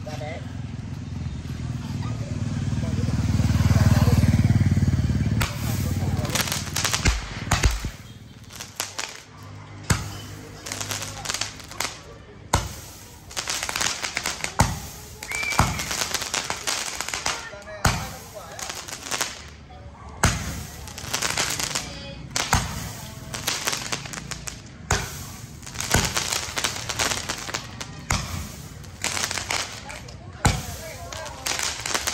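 A consumer firework cake (multi-shot battery) going off: after a low rumble at first, it fires a long irregular string of sharp cracking shots from about seven seconds in, roughly one every half second.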